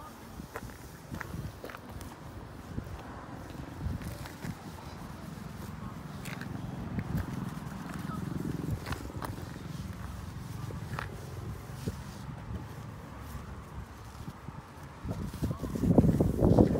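Microfiber cloth wiping over a car's window glass and paintwork: an uneven low rubbing with scattered light clicks, getting louder near the end.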